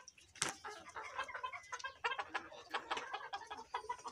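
A flock of Egyptian Fayoumi hens clucking, many short calls overlapping. The keeper takes this 'kor kor' calling for a sign that the hens are ready to start laying. A single sharp tap sounds about half a second in.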